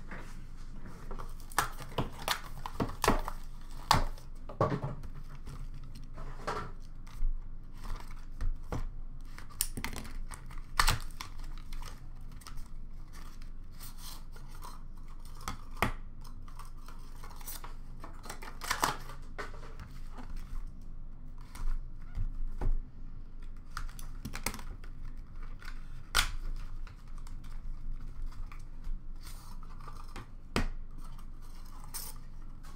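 Hands unpacking a box of trading cards: cardboard and plastic wrapping tearing and rustling, with many short clicks and taps as cards and hard card cases are picked up and set down, some in quick clusters.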